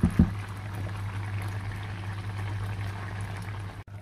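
Mussels and shrimp simmering in sauce in a frying pan: a steady bubbling hiss under a constant low hum. Right at the start, two loud knocks as the spatula strikes the pan and the mussel shells.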